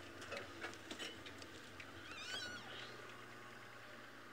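Open safari vehicle's engine running low and steady as it creeps over rough ground, with scattered light knocks and rattles. About two seconds in, a short wavering high-pitched animal call rises and falls for about half a second.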